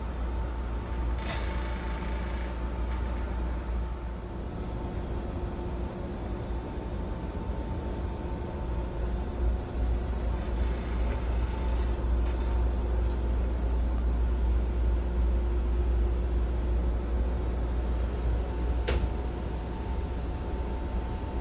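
Steady low drone inside a 209-500 series commuter car standing at a stop, with a thin steady whine from its onboard equipment. There are two short clicks, one about a second in and one near the end.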